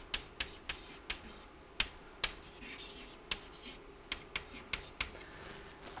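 Chalk writing on a blackboard: irregular sharp taps and short scratches as the stick strikes and drags across the board.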